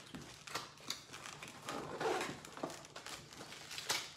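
Plastic packaging on first-aid items crinkling and rustling as they are handled, with a few light clicks and knocks in between.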